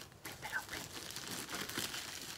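Plastic packaging crinkling softly as it is handled and worked open by hand.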